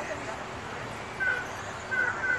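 Steady trackside noise of radio-controlled 2WD race cars running, with faint voices and a few short high chirps about a second in.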